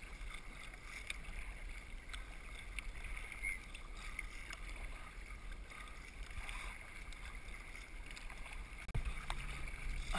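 Sea kayak being paddled on calm water: water lapping and trickling off the paddle blades, with a low wind rumble on the microphone. The water sounds grow louder in the last second.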